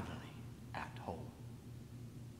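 A pause in a man's speech. A steady low room hum runs under it, with one brief, soft vocal sound from him about a second in.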